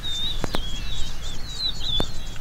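Birds singing, a run of quick warbling chirps one after another, with a single sharp click about half a second in and a low rumble underneath.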